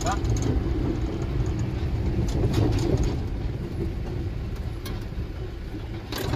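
Engine and road noise of a Mahindra pickup, heard from inside the cab while it drives over a rough dirt track: a steady low rumble with a few short knocks and rattles from the bumps.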